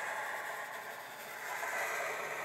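Marker tip drawing a long curved line on paper: a soft, steady scratchy hiss.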